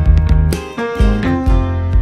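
Instrumental background music: plucked notes struck about twice a second over a low bass line.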